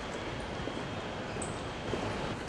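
Steady hubbub of a busy airport terminal hall: a continuous wash of distant crowd noise and movement, with a few faint footstep-like ticks.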